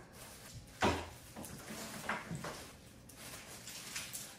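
Small handling noises at a craft table: a sharp tap about a second in and a softer one about two seconds in, with faint rustling of tissue paper and a chocolate being worked onto a wooden skewer.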